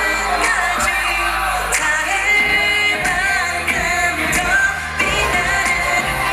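K-pop song performed live on stage, male group vocals over a pop backing track with a steady beat.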